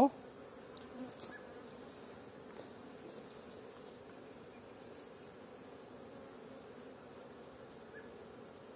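Honeybees from a newly hived Apis swarm buzzing steadily around their wooden hive box.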